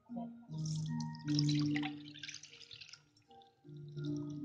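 Beaten egg and dashi mixture pouring through a fine mesh strainer into a metal saucepan, a splashing trickle that dies away about three seconds in. Background music plays with steady notes throughout.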